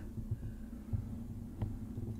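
Soft, irregular low thumping and rumble from a handheld camera being carried along a wall, over a steady hum, with one small click about a second and a half in.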